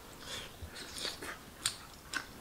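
People biting and chewing boiled dumplings: faint wet mouth sounds and small clicks, with one sharper click a little past halfway.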